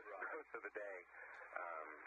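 Speech only: a voice talking, with a thin, narrow sound like a radio link.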